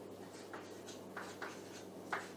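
Chalk on a chalkboard: a run of short, faint scratching strokes as numbers are written.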